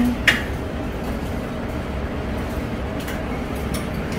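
Steady low background rumble of a busy breakfast buffet hall, with one sharp clink shortly after the start.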